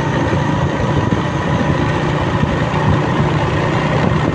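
Motorcycle engine running steadily while riding along a road, with road and wind noise.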